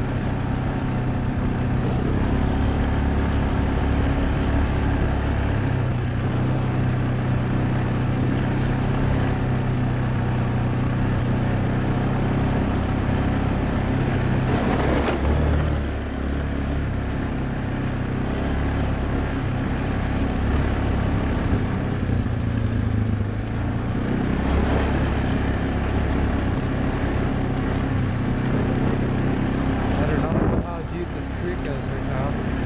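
Yamaha ATV engine running hard on a trail ride, its note stepping up and down a few times as the throttle changes, over the rush of tyres and wind.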